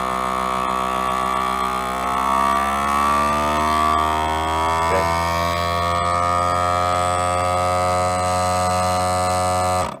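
FoodSaver vacuum sealer's pump running as it draws a bag down tight over a resin-soaked fiberglass layup on a plate mold, a steady motor hum. Its pitch shifts between about two and four seconds in as the vacuum builds, then holds steady until the pump cuts off suddenly near the end.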